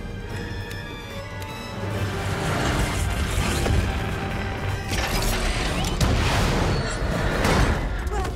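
Film action-scene soundtrack: an orchestral score, joined about two seconds in by loud rushing effects and booms that swell again near five seconds and near the end.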